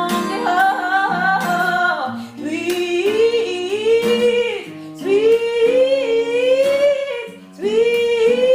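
A woman singing a slow love song over a musical accompaniment, in long held, wavering notes that come in phrases of about two to three seconds.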